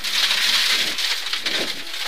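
Rally car's tyres and thrown gravel at about 100 km/h on a gravel stage, heard from inside the car as a steady hiss with stones pattering on the underbody.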